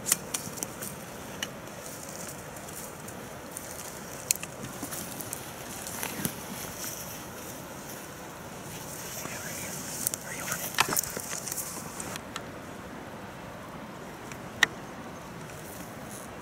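Rustling of clothing and a hunting pack as a hunter crouches and handles gear, over a steady high hiss, with a few sharp clicks and snaps; the loudest click comes near the end.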